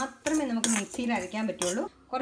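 A voice speaking, with a metal spoon clinking and scraping against a steel pan of fried ginger.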